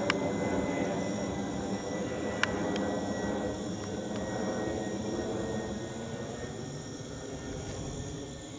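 Jet engines of a twin-engine airliner climbing overhead, a steady rushing rumble that slowly fades as it moves away.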